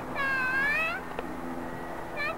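A young child's high-pitched, meow-like squeal, about a second long, dipping and then rising in pitch.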